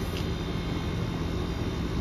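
Steady background noise with a constant low hum and no distinct event, apart from one faint tick shortly after the start.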